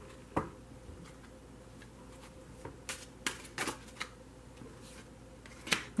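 Tarot cards being handled: a few short, light clicks and slaps as a card is drawn from the deck and laid down on the spread. The clicks are scattered, one about half a second in, several close together around the middle, and one just before the end.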